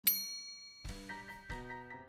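A single bright ding that rings out and fades, followed just under a second in by background music with a low beat and sustained notes starting up: a channel intro sting.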